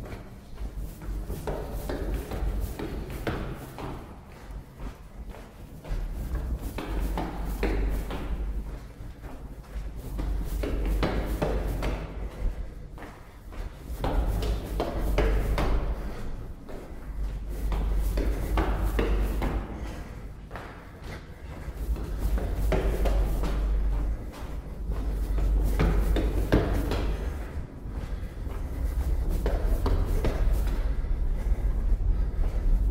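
Hurried footsteps climbing stairs, a steady run of thuds from each step. Under them is low rumbling handling noise from the moving camera, swelling and fading every few seconds.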